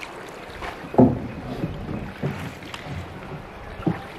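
A wooden paddle working a small wooden boat through calm river water. It gives irregular splashes and knocks, the loudest about a second in and a few smaller ones after, over a steady background rush.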